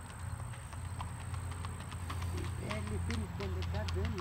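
Tennessee Walking Horse's hooves clip-clopping on a paved path in a four-beat rack, heard as a run of sharp clicks.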